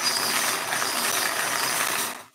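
Wire bingo cage being cranked round by its handle, the numbered balls tumbling and rattling against the wire and each other in a steady clatter that stops right at the end.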